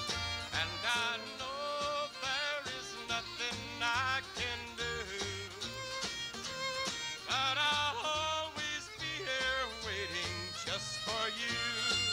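A country band playing a slow song on an old live radio recording. A melody line with wide vibrato rides over a steady, pulsing bass line.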